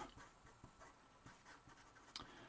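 Near silence, with the faint scratch and small ticks of a permanent marker writing on paper.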